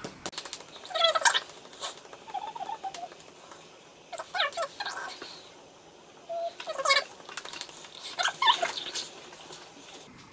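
A liquid lipstick tube being shaken by hand in several short bursts, each a quick cluster of clicks, to mix a formula that has separated in the tube.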